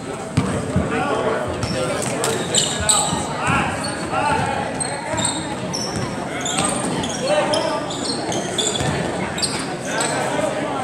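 Basketball dribbled on a hardwood gym floor, with many short high-pitched sneaker squeaks and the chatter of spectators, all echoing in a large gym.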